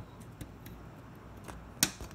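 Faint ticks and scrapes of handling at the open end of a metal paramotor frame tube, with one sharp, louder click shortly before the end.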